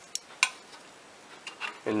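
Metal pliers clicking and clinking as they are picked up and handled: two sharp clicks in the first half second, then a few fainter ones.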